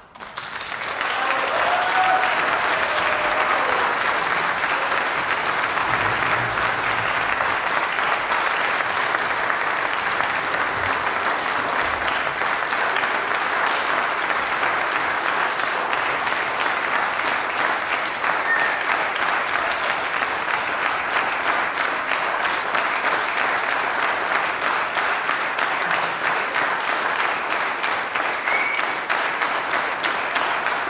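Audience applauding: the clapping swells up over the first second or two, then holds steady and dense.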